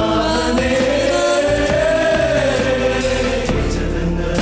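Male choir singing a Christmas hymn in several parts over instrumental backing, with a long held note that swells and falls in pitch around the middle.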